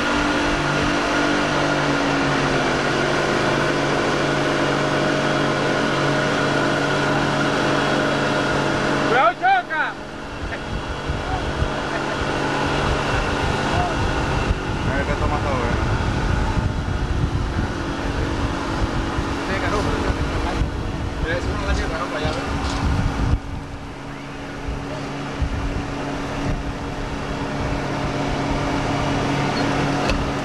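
Boat engine running steadily under way, with rushing water and wind noise. About nine seconds in the sound changes abruptly to a rougher low rumble, and the steady engine drone returns near the end.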